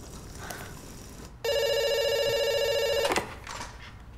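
A telephone ringing once with an electronic warbling trill, about a second and a half in and lasting under two seconds.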